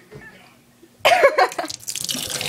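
A girl coughing hard about a second in, a short choking cough with her voice in it, brought on by dry cinnamon powder in her throat.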